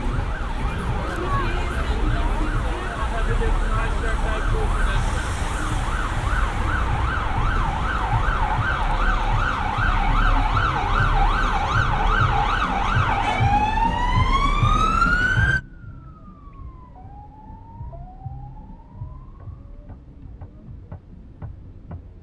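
Emergency-vehicle siren with a rapid up-and-down warble over a low rumble. About two-thirds of the way through it changes to a single rising wail that cuts off suddenly. Faint gliding tones and a few clicks follow.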